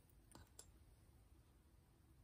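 Near silence: quiet room tone with two faint small clicks in the first second, from a metal earring being handled over the testing slab.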